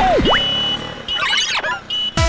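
Cartoon sound effects in a short break in the backing music. A quick pitch swoop dives down and springs back up, then comes a high steady beep, then a burst of fluttering, warbling chirps a little past the middle.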